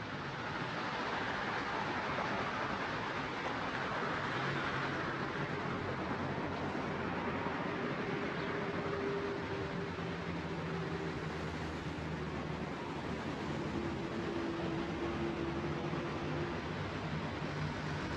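Steady city road-traffic noise, with the hum of vehicle engines coming and going.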